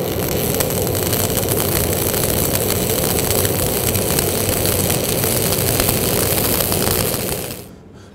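Stick (SMAW) welding arc crackling steadily as the electrode lays a fillet weld along the second side of a steel T-joint; the arc breaks off shortly before the end.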